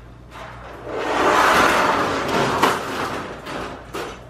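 Metal wire dog crate being handled and slid across a tile floor, a noisy scraping rattle that swells for a couple of seconds, with a couple of sharp metal clanks.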